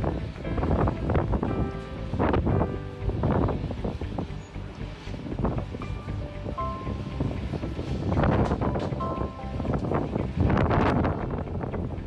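Wind buffeting a phone's microphone in repeated gusts, under background music.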